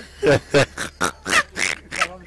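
Men laughing into the microphone in a run of short bursts, about three or four a second.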